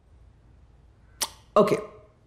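Quiet room tone, broken a little over a second in by a single short sharp click, followed by a woman saying "okay".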